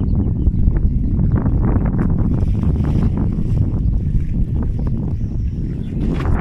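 Wind buffeting the microphone: a loud, unsteady low rumble.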